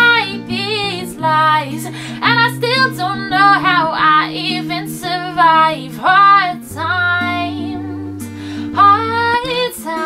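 A woman singing a pop-rock song in an acoustic arrangement, her voice sliding between notes in short phrases over an accompaniment of held low notes.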